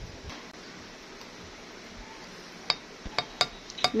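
Quiet room tone, then about five light clinks in quick succession in the last second and a half: a stainless steel measuring cup knocking against the rim of a glass measuring jug as flour is tipped in.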